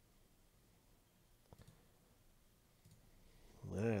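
Near-silent room tone broken by a few faint, short clicks about a second and a half in. A man's voice comes in right at the end.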